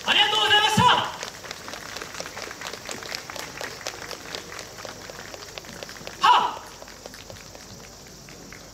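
A loud voice shouting for about a second at the start, then scattered clapping from the audience, with another short shout a little after six seconds.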